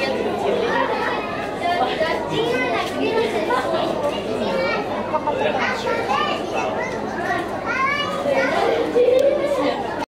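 Many children's voices chattering and calling out over one another, getting a little louder near the end.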